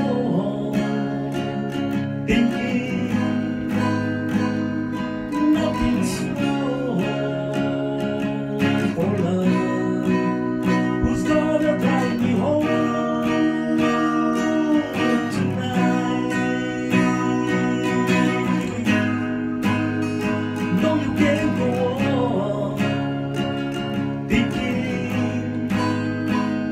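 Acoustic guitar strummed and picked through an instrumental passage of a song.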